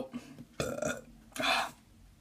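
A boy's two short, rough, breathy throat sounds, like small burps, about half a second and a second and a half in, as he reacts to the burn of spicy jalapeño in his throat.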